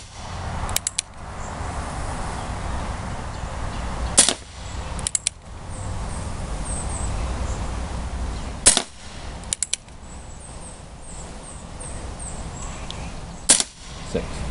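Three sharp pops from a CO2-powered Remington Model 1875 single-action BB revolver, about four and a half seconds apart, each followed about a second later by a quick few clicks of the hammer being cocked for the next shot. The gas is still strong: it is still shooting pretty dang hard.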